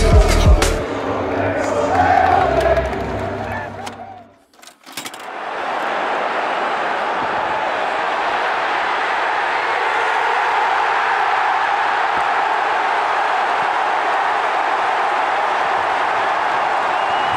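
Music with a beat that fades out about four seconds in, then, after a brief hush, the steady noise of a large stadium crowd at a rugby match.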